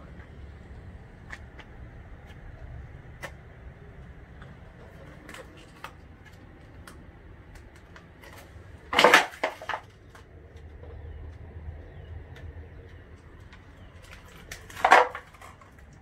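Faint handling and footstep noise: scattered light clicks over a low, steady background, with two short, louder scraping knocks about nine and fifteen seconds in.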